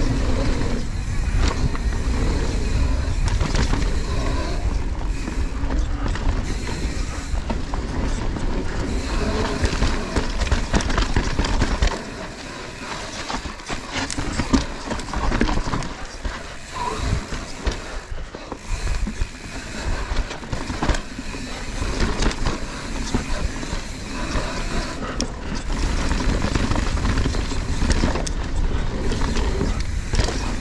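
Mountain bike ridden fast down a dirt forest trail, heard from an on-bike or helmet camera: wind rumbling on the microphone, tyres on dirt and the chain and bike rattling in quick knocks over bumps. The low wind rumble eases about twelve seconds in and comes back near the end.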